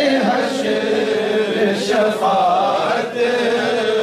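A man singing a naat, an Urdu devotional poem, into a microphone. He holds long notes and bends them in ornamented runs of pitch.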